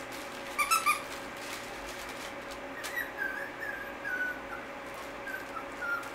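Young doodle puppies squeaking three times about half a second in, then whimpering in a run of short, falling whines from about three seconds in, with a few more near the end. A faint steady hum runs underneath.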